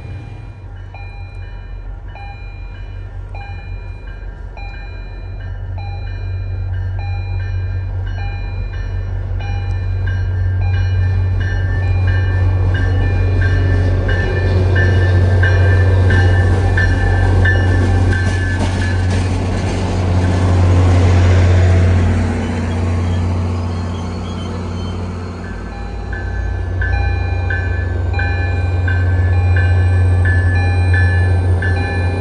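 Diesel commuter-train locomotive running with a steady low engine drone as the train comes closer and louder. Over it a bell rings about twice a second; it breaks off for a few seconds late on, then rings again.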